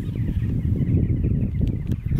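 Wind buffeting the camera microphone, a loud uneven low rumble, with faint high chirping over the first second and a half.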